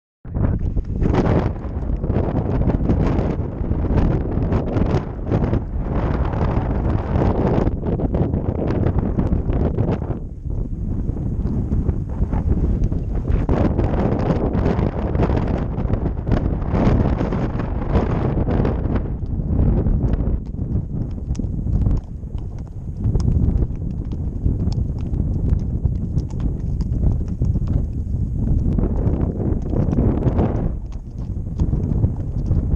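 Hoofbeats of ridden horses walking on a stony dirt track, a steady irregular clopping, with wind noise on the microphone.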